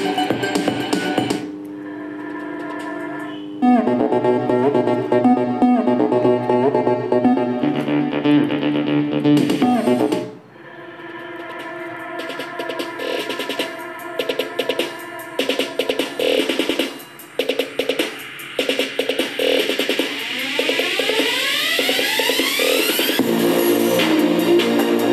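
Guitar-and-electronic music played through a pair of small speaker boxes driven by a TDA7297 amplifier board, with no audible distortion. The music drops back about a second and a half in, picks up again near four seconds, dips briefly near ten seconds, and has rising sweeps near the end.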